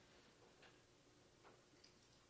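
Near silence: room tone, with two faint short ticks about two-thirds of a second and a second and a half in.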